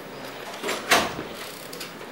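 Brief handling noise close to a microphone: a short rustle, then a louder sharp knock-like rustle about a second in.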